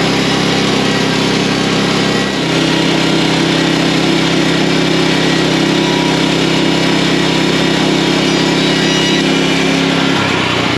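Woodland Mills HM130MAX band sawmill running steadily: its gasoline engine under load while the band blade cuts lengthwise through a softwood cant. The engine note shifts about two seconds in.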